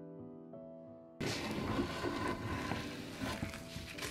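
Soft background music with sustained piano-like notes, then, about a second in, a sudden loud rough scrubbing noise of a brush working over a paint-stripped wooden chair seat, lasting about three seconds.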